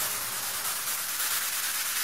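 A steady hiss of electronic white noise, like steam or a wash of rain, with no notes or bass under it. It fills a gap in a synthesizer music track.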